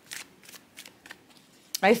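A stack of stiff picture cards being handled and flicked through in the hands: several soft, quick card flicks in the first second or so, then quieter.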